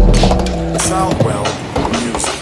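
Skateboard wheels rolling on a ramp with a few sharp knocks of the board, over background music.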